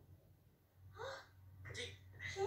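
A faint, short vocal exclamation about a second in, then a gasp-like breath near the end, heard through a television speaker over a low steady hum.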